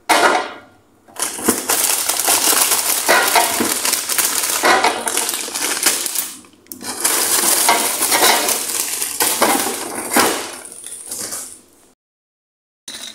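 Rummaging in a plastic freezer drawer: frozen-food packaging crinkling loudly and items knocking against the drawer, in two long stretches with a brief pause about halfway.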